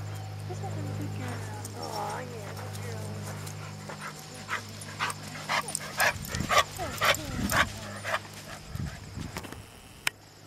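A dog whining with wavering pitch, then giving a run of about eight short yips or barks, roughly two a second, over a low steady hum that fades out about four seconds in.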